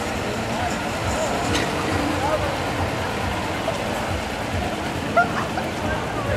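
Fire engine's diesel engine running as the truck pulls away and drives off, under a steady murmur of crowd voices. A brief sharp sound stands out about five seconds in.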